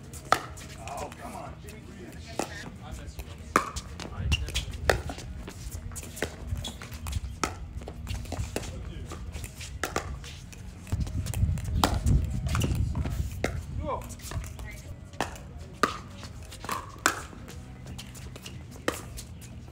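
Pickleball paddles hitting a hard plastic ball in a doubles rally: a dozen or so sharp pops at irregular intervals, with a low rumble swelling in the middle.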